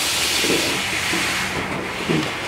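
A hiss that starts suddenly and fades away over about two seconds.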